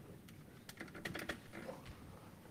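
Faint run of small, sharp plastic clicks and taps a little past halfway, with a few more near the end, from a laptop and its power plug being handled and pushed back in.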